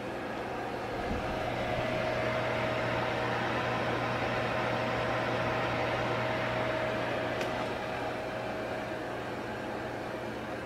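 Steady whir of an electric fireplace heater's fan, with a low hum under it and a faint steady whine that comes in about a second in and fades near the end. One short click late on.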